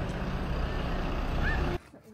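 A steady low outdoor rumble that cuts off suddenly near the end, with one faint short chirp just before.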